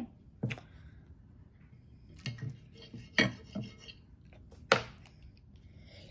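Wooden chopsticks being handled and rubbed together: about six sharp wooden clicks and scrapes, the loudest a little past three seconds and near five seconds in.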